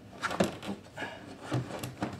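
Fuel return hose being worked onto the fitting of an in-tank fuel pump by hand: a few short rubbing scrapes and scuffs.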